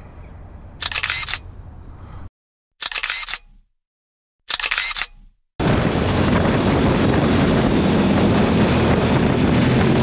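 Three short bursts of high-pitched noise, each about half a second long, with cuts to dead silence between them. About five and a half seconds in, steady loud wind rush with motorcycle engine noise starts, as the bike runs at speed with wind on the microphone.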